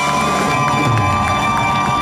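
A live rock band ends a song, its instruments ringing out while the audience cheers.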